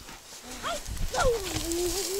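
A drawn-out, wavering vocal call: a short rising squeak, then a long tone that slides steeply down in pitch, holds low and begins to rise again.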